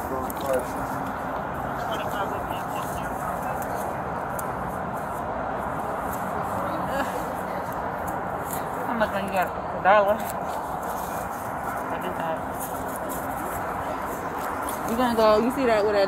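Muffled, indistinct voices over steady background noise, picked up by a police body camera's microphone, with a couple of clearer bits of talk about ten seconds in and near the end.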